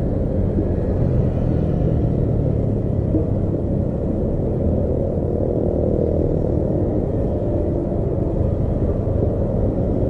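Steady low rumble of a vehicle driving slowly in traffic: engine and road noise picked up by a camera mounted on it.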